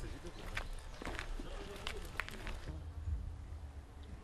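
Footsteps on a dirt path, about two steps a second, over a low rumble; the steps stop a little past the middle.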